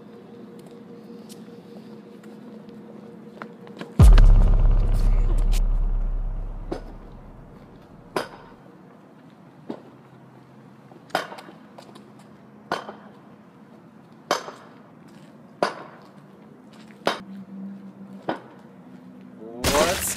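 Horror-film sound design: a steady low drone, then a sudden deep boom about four seconds in that rumbles away over the next few seconds. After it come sharp knocks about every second and a half.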